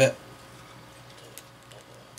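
A spoken word ends at the start, followed by quiet room tone with a few faint, brief clicks of a plastic action figure and its accessory being handled, about halfway through and again near the end.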